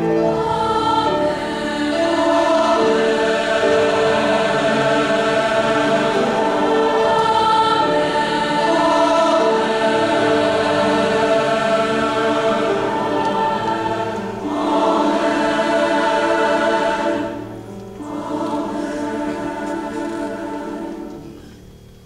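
Large choir singing sustained chords, full and loud for most of the stretch. After a short break a softer final phrase dies away near the end.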